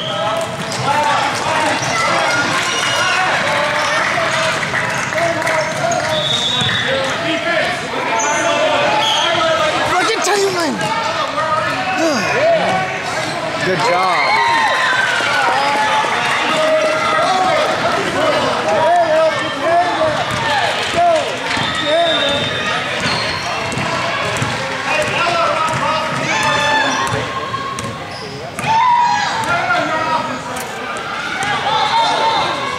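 Basketball bouncing on a hardwood gym floor during a game, amid the overlapping voices of players and spectators calling out.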